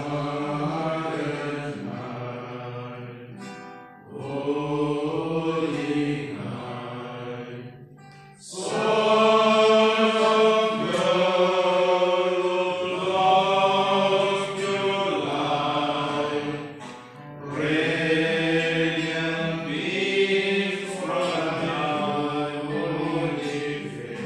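A group of men singing a hymn together in unison, phrase by phrase, with short breaks between lines about four, eight and seventeen seconds in. The singing is loudest in the middle stretch.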